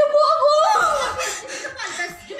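A woman crying in distress: a long high wail that falls away about half a second in, then breaks into uneven sobs.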